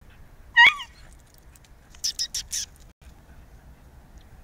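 A Podenco gives one short, sharp squeal about half a second in, a protest at being sniffed by the other dog. A little later come four quick, hissy sounds in a row.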